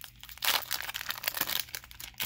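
Foil wrapper of a Pokémon booster pack being torn open and crinkled by hand. The loudest tearing comes about half a second in, followed by smaller crinkles.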